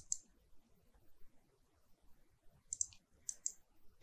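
Faint computer mouse clicks: one at the start, then two quick pairs of clicks about three seconds in.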